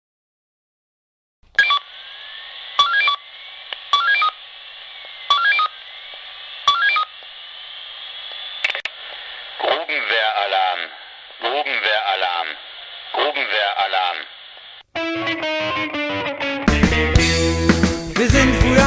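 Telephone-line sound effect on a recorded song: several short touch-tone dialing beeps over line noise, then a voice heard as if over a phone. A rock song starts near the end, with the full band coming in.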